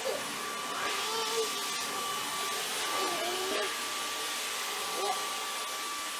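Dyson cordless stick vacuum running steadily, a constant suction rush with a thin high whine.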